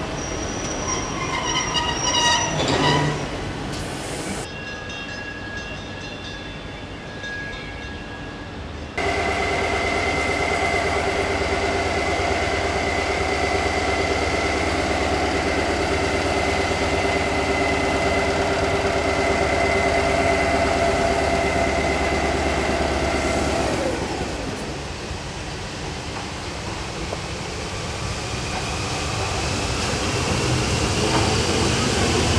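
Vintage electric locomotive at a station: a steady deep electrical hum with several held whining tones from its motors and cooling blowers. The whine sinks in pitch as it moves off, and the rumble of the train passing rises near the end. A brief squeal of falling tones comes a few seconds in.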